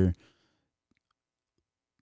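A drawn-out spoken word trails off just after the start, then near silence with a few faint short clicks about a second in.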